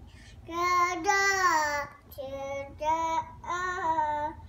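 A toddler singing without words: one long held note, then a run of shorter notes.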